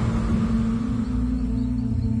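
Dark, ambient film-score music. A fuller swell dies away right at the start, leaving a low held drone over a deep rumble.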